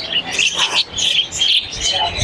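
Many small cage birds chirping and tweeting over one another in a busy chorus, with a brief louder rustle about half a second in.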